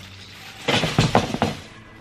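Plastic bag full of Christmas decorations crinkling and rustling as it is handled, in a burst of about a second near the middle.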